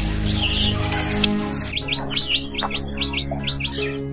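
A small bird chirping: a quick run of about eight short, high, repeated chirps in the second half, over background music.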